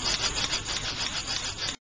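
Servo motors of a small humanoid robot running with a rasping, rapidly pulsing noise while it holds its folded-arm prayer pose. The sound cuts off suddenly near the end.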